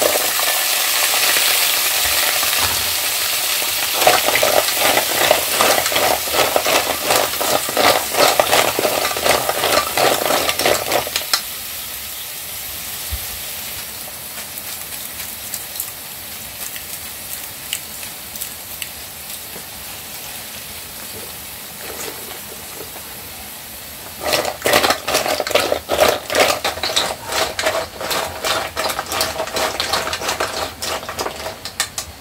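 Snails in their shells tipped into a hot aluminium pot and sizzling, the shells rattling against the pot as they are stirred from about 4 to 11 seconds in and again near the end. Between the stirring, a quieter steady sizzle.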